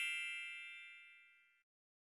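The ringing tail of a struck bell-like metallic chime, several tones dying away and gone about a second and a half in.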